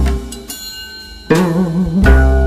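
Gayageum playing a jazz standard over deep bass notes, with plucked attacks. The music thins out about half a second in. From a little past the middle, a held note wavers up and down in pitch.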